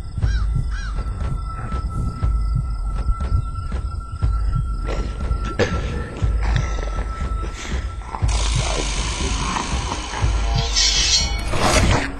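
Eerie horror-film soundtrack: a low throbbing pulse under a steady high tone and regular ticking, with a harsh noisy swell coming in about eight seconds in and peaking near the end.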